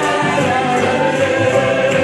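Gospel music: a choir singing with instrumental accompaniment, steady and loud.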